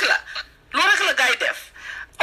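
A person's voice talking in two short phrases, the second about three quarters of a second in.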